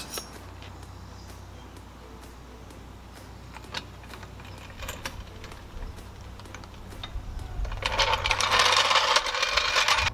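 Scattered metallic clicks and clinks from a low-profile floor jack and its handle over a low wind rumble on the microphone. Near the end, a loud scraping rattle as the floor jack is pulled out across the asphalt.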